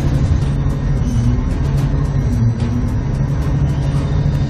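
Dockside crane hoist running with a steady low drone as its wire rope winds on the drum, lifting a load.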